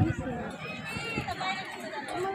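Indistinct voices talking in the background, some of them high-pitched, with no clear words.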